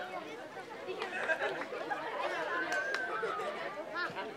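Crowd chatter: many voices, children's among them, talking and calling over one another.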